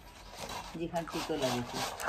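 A man chewing crunchy food with a rasping, grinding sound, then his voice coming in about a second in.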